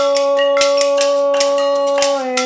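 A woman's sung note held steadily at one pitch over kitchen-utensil percussion: metal tongs clacking and glass jars shaken and tapped in a quick rhythm.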